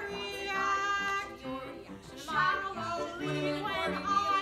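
A woman singing a musical theatre song with live piano accompaniment, with a brief drop in loudness about halfway through.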